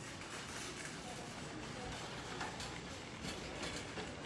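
A wire shopping cart rolling over a hard, smooth floor, giving a steady low rattle with faint irregular clicks, over a steady background noise.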